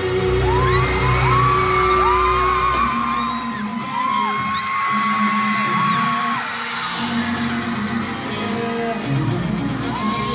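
Concert crowd screaming in a large arena, many long high screams overlapping, over live music playing through the PA as the show starts. The screams thin out in the last few seconds while the music runs on.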